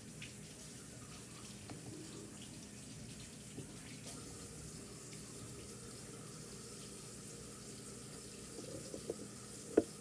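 Kitchen tap running steadily while hands are washed at a sink, with a few light clinks and one sharp knock near the end.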